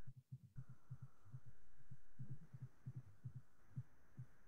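Faint, muffled low thumps, several a second at an uneven pace, from keys being pressed on a laptop, heard through a video-call connection as slides are stepped back one after another.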